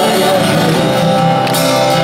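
Live rock music led by a strummed acoustic guitar, with the singer's held line ending about half a second in and the chords carrying on.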